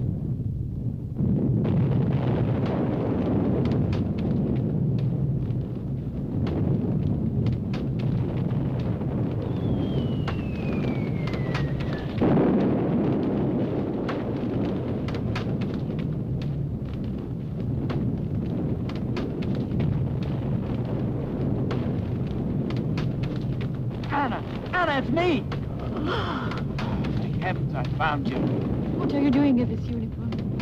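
Film sound effects of a bombing raid: a continuous low rumble of bombardment and burning, with frequent cracks. About ten seconds in, the descending whistle of a falling bomb ends in a loud explosion.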